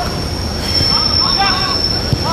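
Several voices shouting and calling out over one another. A steady, high-pitched whine comes in about half a second in and holds.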